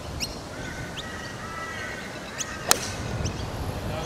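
Golf club striking the ball on a tee shot: one sharp crack about two and a half seconds in. Short high bird chirps repeat throughout.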